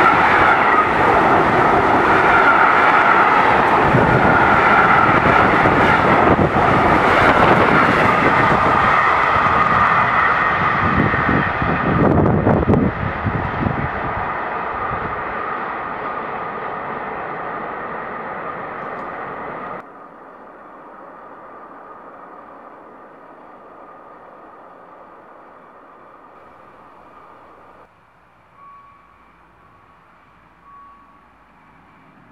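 Freight train of tank wagons passing close by, the wheels rumbling and clattering over the rails, loud for about the first twelve seconds and then fading as the end of the train goes by. About two-thirds of the way through the sound drops sharply to a faint steady rumble, and a short beep sounds near the end.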